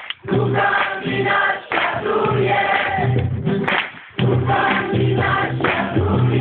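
A group of pilgrims singing a song together in chorus, with steady low notes under the voices. The lines are separated by short breaks, one about four seconds in.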